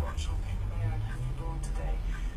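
Faint voices talking, too low to make out words, over a steady low hum.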